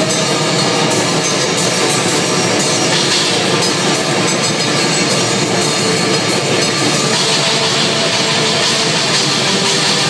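Black metal band playing live: electric guitars and drum kit in a loud, dense, unbroken wall of sound, with rapid regular cymbal strokes on top.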